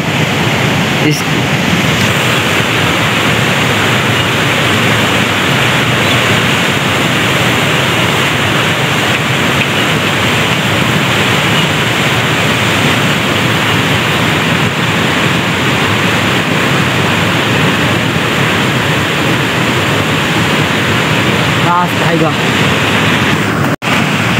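A fast river rushing beside the field: a loud, steady roar of flowing water that is heavy enough to drown out speech.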